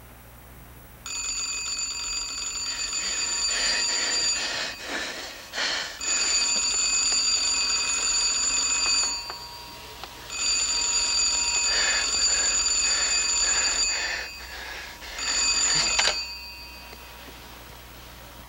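Early-style telephone bell ringing: three long rings of about three seconds each, with pauses between them, then a short fourth ring that stops when the call is answered.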